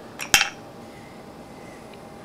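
A steel ball bearing dropped from an electromagnet into a clear plastic tube of a Connect 4 rack: a faint tick, then one sharp metallic clink as it lands, ringing only briefly.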